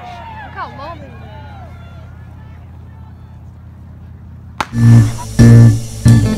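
Faint outdoor crowd noise with a few voices, then a single sharp crack about four and a half seconds in. Loud background music with guitar and drums comes in right after it.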